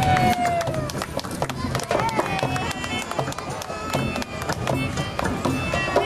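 Live hand-drum circle: djembes and goblet drums played with fast, dense strokes, with a small flute playing sliding notes that fall in pitch over the drumming.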